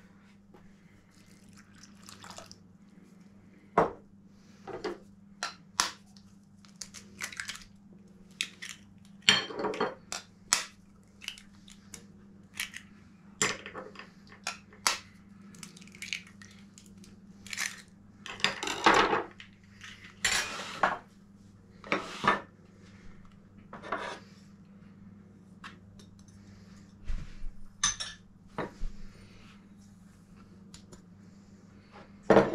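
Kitchen bowls and spoons knocking and clinking irregularly as ingredients are tipped and scraped from small bowls into a mixing bowl, with a few longer scrapes. A steady low hum runs underneath.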